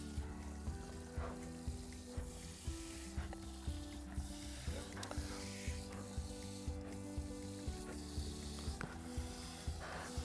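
Garden hose spraying water over potted seedlings, a soft steady hiss, under quiet background music with held notes.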